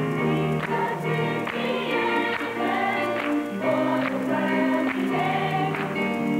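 Children's gospel choir singing, with instrumental accompaniment and a steady beat.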